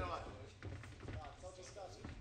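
Short sharp slaps and thuds from two MMA fighters exchanging strikes and moving on the canvas inside a cage, with shouted voices from around the cage.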